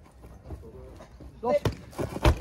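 A shout of "Hey!", then a sharp smack of the heavy krachtbal ball against a player's hands, followed by a lighter knock just before the end.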